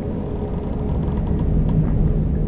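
Steady low rumble of an airship's engines heard from inside the cabin, with a faint steady hum over it; it grows a little louder in the second half.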